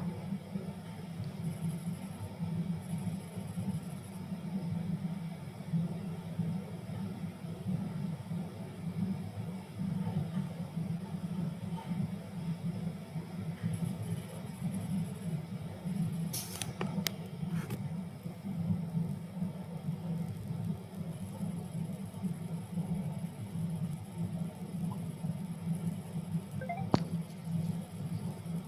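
Steady low background hum of room noise on an open video-call microphone, with a few brief clicks in the second half.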